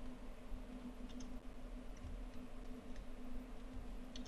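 Quiet room tone with a steady low hum and a few faint clicks.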